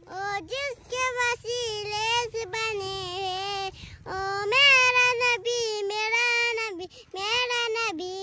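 A young girl singing in a high, clear voice, in long held and gliding notes. Her phrases break briefly about four seconds in and again near the end.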